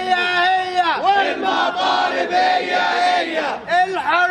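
A man shouting a protest chant through cupped hands, with a crowd of protesters chanting along. The shouted syllables are drawn out and held, with short breaks about a second in and near the end.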